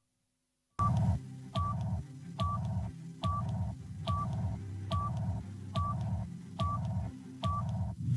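Countdown sound effect for a TV show's break bumper: a short beep and a lower tone repeat about nine times, a little faster than once a second, over a steady low synth bed. It starts after almost a second of silence.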